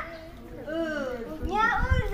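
Speech: lively voices of people talking and calling out in a group, overlapping, with a low rumble near the end.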